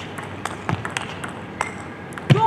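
Table tennis rally: the plastic ball clicking sharply off the bats and the table in quick succession, with one heavier thump about three-quarters of a second in.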